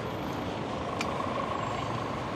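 Steady street traffic noise with a faint, steady high whine and a single click about a second in.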